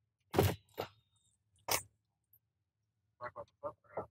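Handling noise from a camera inside a car: three sharp knocks in the first two seconds, then a quick run of short soft clicks near the end.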